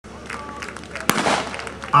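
A single sharp crack about a second in, the starting shot that sends a fire-sport team off on its attack run, over background crowd voices.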